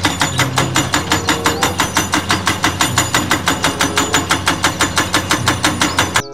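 Hydraulic breaker hammer on a Caterpillar tracked excavator pounding rock in a fast, even rhythm of about six blows a second. The excavator's diesel engine runs steadily underneath.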